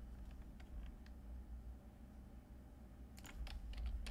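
Computer keyboard keystrokes: a few faint scattered taps, then a quick run of keys about three seconds in, over a low steady hum.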